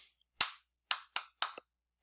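One person clapping his hands: four sharp, separate claps, the first on its own and the next three in quicker succession.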